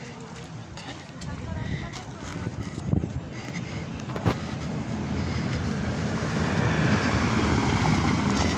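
An Audi Q3 SUV coming up from behind and driving slowly over cobblestones, tyres rumbling on the stones with the engine running, growing steadily louder as it draws level. Two short knocks, about three and four seconds in.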